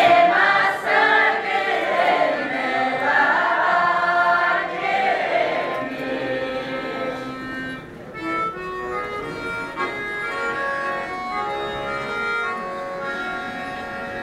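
A group of women singing an Udmurt folk song in unison with accordion accompaniment. About halfway through, the singing drops back and the accordion carries the tune in short, stepped notes.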